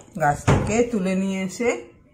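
A woman talking, with one dull knock about half a second in.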